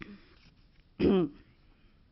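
A woman clearing her throat once, a short pitched vocal sound falling in pitch, about a second in.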